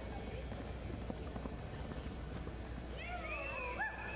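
Arena murmur with the soft hoofbeats of a loping horse on dirt. From about three seconds in, several spectators whistle, rising and falling, as the reining horse comes to its stop.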